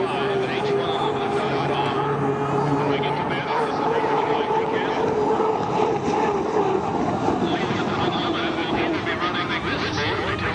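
Turbine engine of an Unlimited hydroplane running at speed on the water, a steady whine that wavers slightly in pitch.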